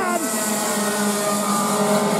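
Racing kart engines running at speed around the track, a steady drone with slowly shifting pitch.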